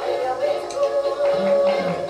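Flamenco music with a singer holding a long, wavering note.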